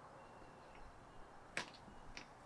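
Quiet outdoor background with a faint thin whistle in the first second, then a sharp click about one and a half seconds in and a smaller one just after, as someone steps out through a front doorway.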